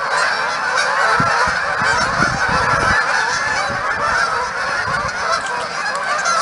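A large flock of geese on the water honking and squawking all at once, a dense, unbroken chorus of overlapping calls, the flock stirred up after being chased off the shore.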